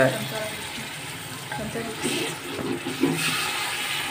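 Water poured into a hot pot of frying tomato-onion masala, splashing and sizzling, while a wooden spoon stirs. The water goes in to loosen the masala so it doesn't stick to the pot.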